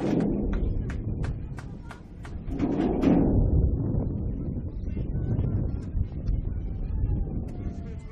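Scattered handclaps and voices from a small outdoor football crowd and players celebrating a goal, the claps coming unevenly over the first three seconds, over a steady low rumble.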